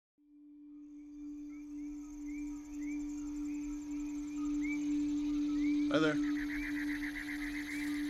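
A single steady low tone, trailer sound design, fading up out of silence, with short rising chirps repeating about twice a second above it. A man's voice says 'Hi there' about six seconds in.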